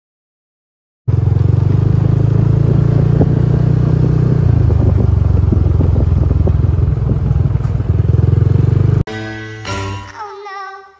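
Motorcycle riding along at a steady speed: a loud, even engine and road rumble that starts suddenly about a second in after silence. About nine seconds in it cuts off and music begins.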